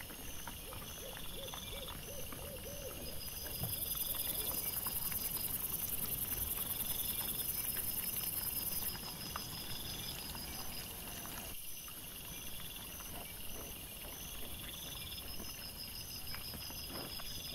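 Trail-camera night audio played at four times speed: a steady high hiss with evenly repeating insect chirps, over faint rustling and clicks from wild boar foraging in leaf litter.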